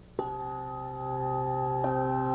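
A handbell choir ringing a chord of several handbells struck together just after the start, the tones ringing on steadily; a second chord is struck near the end.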